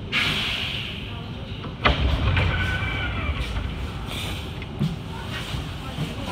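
Metro train standing at an underground platform: a sudden hiss of air as it comes to rest, then a loud clunk about two seconds in as the doors open.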